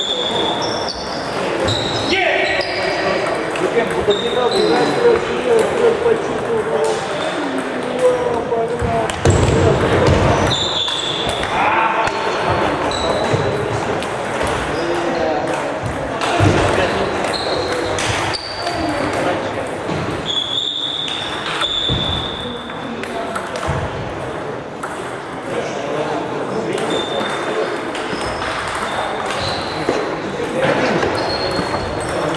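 Table tennis balls clicking off bats and tables at several tables, with background chatter.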